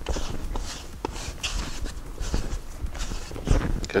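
Pelmeni dough being kneaded by hand on a floured wooden board: irregular soft knocks and thuds as the dough is pressed and pushed against the wood.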